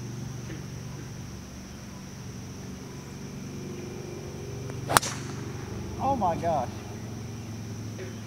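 A golf driver striking a teed ball on a full tee shot: one sharp, loud crack about five seconds in.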